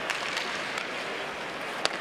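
Steady hockey-arena crowd noise, with a single sharp crack near the end: a stick striking the puck.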